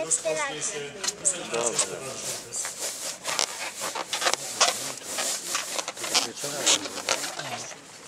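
Handling noise close to an open microphone: irregular knocks, clicks and rubbing as people move around the microphone stand, with low voices under it in the first couple of seconds.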